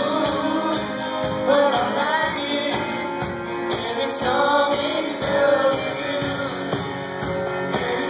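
Live band music: a male lead singer singing over acoustic guitar and a steady beat, heard through the hall from among the audience.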